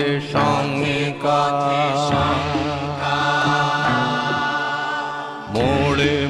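Bengali song with a voice singing long, wavering held notes over its accompaniment. The sound dips briefly about five and a half seconds in, then the singing resumes.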